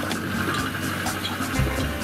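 Rushing water and a low thump about one and a half seconds in as a round Brucker survival capsule, lowered fast on its cable, lands in the sea.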